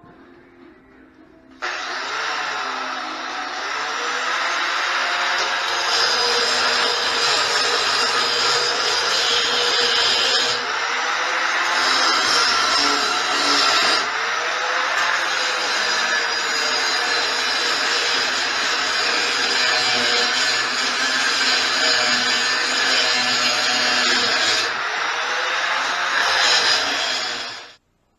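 Angle grinder cutting through a steel plate motor mount on a steel tube go-kart frame. It starts about two seconds in and runs loud and steady, its pitch wavering up and down as the disc bites into the metal, then cuts off suddenly just before the end.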